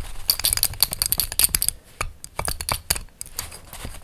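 Fingertips and nails tapping and scratching on a metal western belt buckle with a raised rose emblem: quick light metallic clicks, a rapid flurry in the first second and a half, then slower scattered taps.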